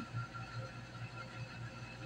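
Quiet room tone: a low, steady hum under faint hiss.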